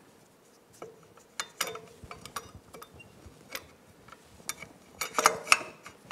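Scattered light metallic clicks and clinks as a Kawasaki KLR650's front brake caliper, fitted with new pads, is worked back over the disc and onto its fork mount. The loudest is a quick cluster of clinks about five seconds in.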